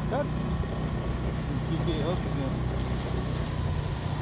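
Motorcycle engine running steadily at low speed while riding, with faint voices over it.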